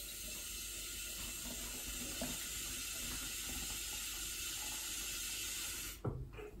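Water from a kitchen tap running into a plastic shaker bottle, topping it up, a steady hiss that cuts off suddenly near the end as the tap is shut.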